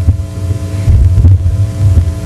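Loud low electrical hum on the sound system's feed, with a wavering throb and a faint steady buzz above it, typical of mains hum.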